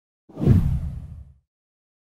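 A whoosh sound effect with a deep low boom, from an animated channel-logo intro. It starts suddenly about a third of a second in and fades away over about a second.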